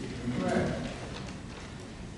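A man's voice trails off in a brief syllable about half a second in, then gives way to the faint background of a lecture hall with a few scattered soft ticks.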